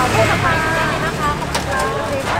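People talking, with a steady low engine rumble of street traffic underneath.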